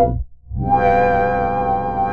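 Full Bucket FB-3200 software synthesizer, an emulation of the 1978 Korg PS-3200, playing a sustained pad chord. The sound cuts out briefly just after the start, then a new chord comes in and holds with a slight wavering in pitch.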